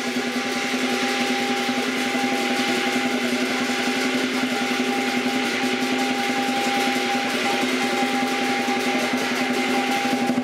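Lion dance percussion: a large Chinese drum beaten in a fast, continuous roll, with gong and cymbals ringing over it.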